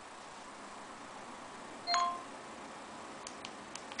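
A short electronic chime from a smartphone voice assistant about halfway through: a brief high note, then a lower two-tone note, over faint hiss. A few faint clicks come near the end.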